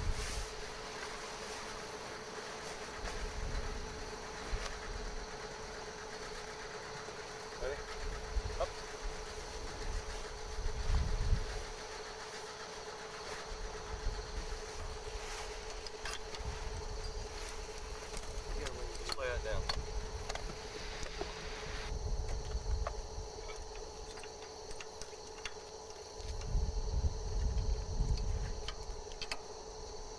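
A steady hum throughout, with low gusts of wind on the microphone swelling now and then and faint distant voices.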